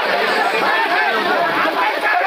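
A crowd of many people talking at once, a loud, steady babble of voices.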